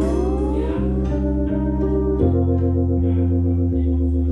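Live instrumental music: a keyboard plays held organ chords over a low bass line, while a lap-played acoustic slide guitar glides up in pitch in the first second. A little past two seconds in, the organ chord takes on a fast pulsing warble.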